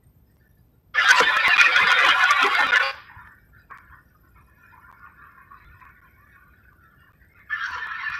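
Harsh, noisy sound coming through a participant's open microphone over the video call: a loud burst about two seconds long starting a second in, a fainter thin stretch after it, and a second burst near the end.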